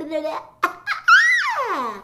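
A grown woman's voice imitating a baby's noises: a short coo, a click, then a high squeal that rises and slides steeply down like a baby's giggle. These are the baby sounds of a cartoon baby who doesn't really talk.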